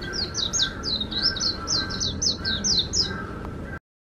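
Recorded song of a Japanese white-eye (mejiro) played from an exhibit speaker: a fast run of about fifteen high chirps, each sliding downward in pitch. It cuts off abruptly near the end.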